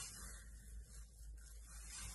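Faint room tone inside a car, with a steady low hum.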